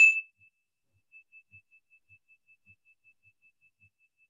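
A small hand-held metal chime struck once with a mallet: a sharp high ding, then a single clear ring that pulses about five times a second as it slowly fades.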